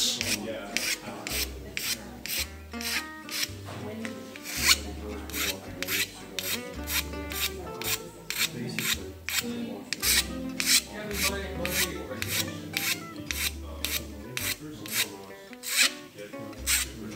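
Hand file rasping across a small ebonized rosewood guitar bridge in steady, evenly repeated strokes, about two a second, taking down the width of the bridge's footprint so it fits the guitar.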